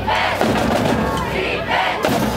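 A group in the bleachers shouting a chant over a marching drumline of snare drums, bass drums and crash cymbals, with repeated loud shouts.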